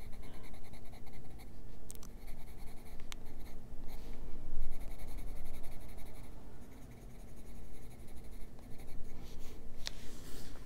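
Faber-Castell Polychromos coloured pencil scratching on paper in short, quick, repeated shading strokes, easing briefly partway through. There are a few light clicks, the sharpest near the end.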